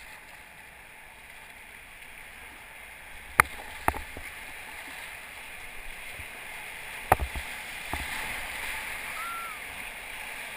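Rushing whitewater of a river rapid, its hiss growing steadily louder as the boat runs into it. A few sharp knocks cut through the water noise, two about a third of the way in and two more about two-thirds in.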